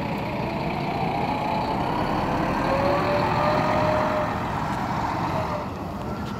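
Tour bus engine running as the bus maneuvers to park, with a faint whine that rises and then falls in pitch over a few seconds.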